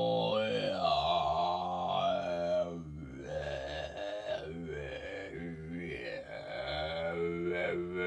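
A man's voice doing Mongolian-style throat singing: a low drone held on one pitch, with its overtones shifting up and down over it. The drone dips briefly about three and six seconds in.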